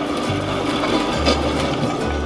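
Rollers of a playground roller slide turning and rumbling as a child rides down on his back, with background music.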